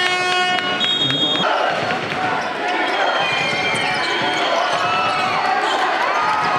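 Basketball arena sound: an electronic horn that cuts off just under a second in, then a short high referee's whistle. After that, crowd voices, shouts and whistles, with basketball bounces on the hardwood court.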